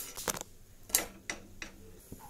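A handful of light clicks and taps of kitchen utensils against a nonstick grill pan. The clearest comes about a second in.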